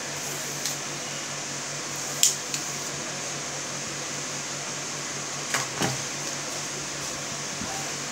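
Sharp plastic and metal clicks from a selfie stick being handled, its phone clamp and telescoping pole, over a steady background hum. The loudest click comes about two seconds in and a close pair near six seconds.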